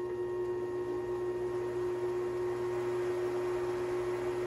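Treadmill DC motor on a metal lathe, fed by an SCR speed controller, running at low spindle speed with a steady electrical hum and whine over a light hiss. The fine speed knob is raising it from about 60 to nearly 300 rpm, but the hum holds the same pitch.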